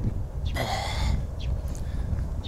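Wind rumbling on the microphone outdoors, with one short breath from the man holding the camera about half a second in.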